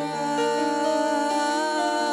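Music: a Yamaha MOXF keyboard playing slow, held chords in a soft worship song, with a low bass note coming in at the start and the chord shifting every second or so.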